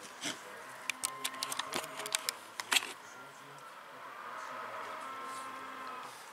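A quick run of small sharp clicks and knocks from a handheld camera being carried and handled, the loudest near the three-second mark. A faint steady hum with a couple of held tones follows.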